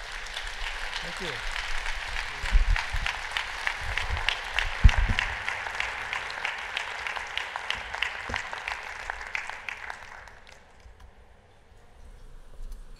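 Audience applauding, a dense patter of clapping that fades out about ten seconds in, with a few low thumps partway through.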